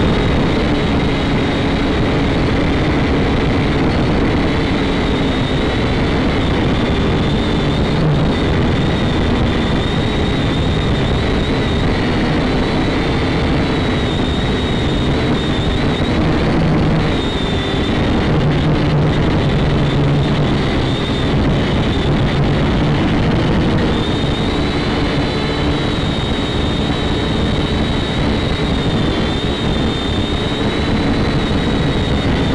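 Small toy quadcopter's motors and propellers whining steadily in flight, heard loud and close through the drone's own onboard camera microphone, the whine shifting slightly in pitch as the throttle changes.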